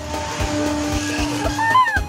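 Background music with a steady beat. Near the end comes a child's short shout that rises and falls in pitch.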